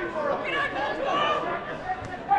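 Voices at a football match: men calling and chattering from the sparse crowd and the players on the pitch during open play.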